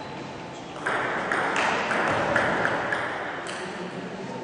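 Table tennis rally: the celluloid ball clicking off paddles and the table in a quick series of sharp ticks, in a large hall. A rush of background noise rises about a second in and fades near the end.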